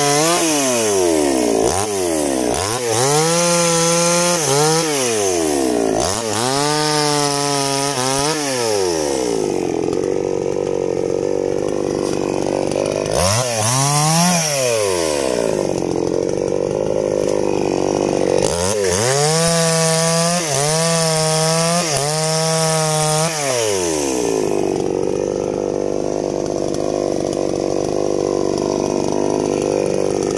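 Two-stroke petrol chainsaw cutting longan wood: the engine revs up to full throttle in about five bursts as the chain bites, and drops back to idle between cuts. The idling stretches grow longer in the second half.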